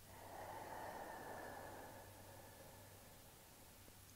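A person's slow, soft breath: one long exhale that swells about a second in and fades away by about three seconds, as she rounds her spine in a slow cat-cow.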